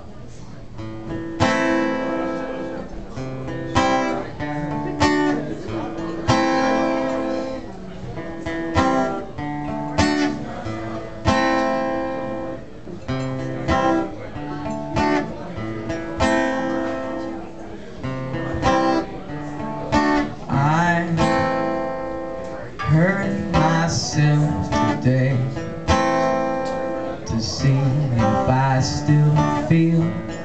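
Acoustic guitar strummed in a steady rhythm, with a strong accented chord about every second and a half and the strings ringing between strokes.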